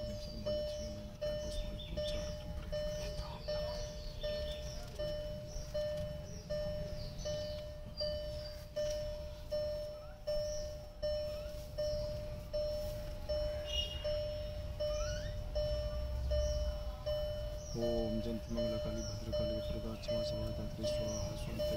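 Car's electronic warning chime beeping over and over at an even pace, about four beeps every three seconds.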